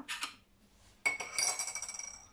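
A metal teaspoon clinking against the stainless steel mixing bowl of a Thermomix TM6: a light clatter at the start, then a sharper strike about a second in that rings on for about a second.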